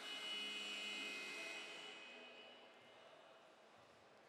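A steady tone with several pitches sounding at once, setting in suddenly and then fading away over about two seconds.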